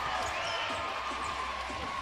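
Arena sound from live basketball play: a steady crowd murmur with the ball bouncing on the hardwood court.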